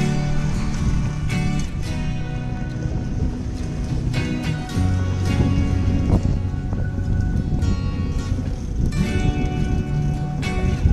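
Background music: held chords that change every few seconds, with lighter notes over them.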